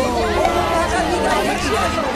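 Many people's voices overlapping at once, a dense babble of excited exclamations with no single voice standing out.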